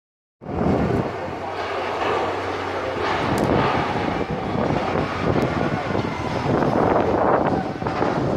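Steel roller coaster train climbing and cresting its steep cable lift hill, a steady rumbling noise of the cars on the track, with wind on the microphone.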